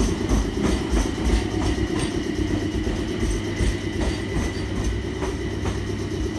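JR 719 series electric train standing at a platform, its onboard equipment running with a steady low hum and a faint high whine.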